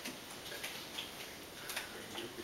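Quiet room tone with a few faint, irregularly spaced clicks, the sharpest a little before the end.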